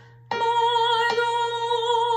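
A woman singing a long held note of the alto line along with a digital (MIDI) piano, coming in about a third of a second in after a brief hush.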